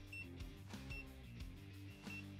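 Soft background music with three short, high beeps from the vinyl cutter's touchscreen as its keypad keys are pressed.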